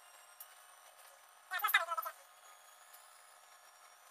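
Mostly very quiet room, broken about one and a half seconds in by a single short, high-pitched vocal sound from a man, like a brief laugh, lasting about half a second.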